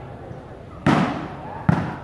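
Two loud slaps of hands striking a volleyball during a rally, a little under a second apart, over background crowd voices.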